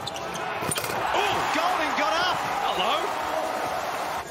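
A basketball slammed through the rim in a one-handed dunk, a sharp bang a little under a second in. An arena crowd cheers loudly right after it.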